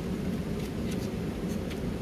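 Scissors cutting paper: a few faint, crisp snips over a steady low hum.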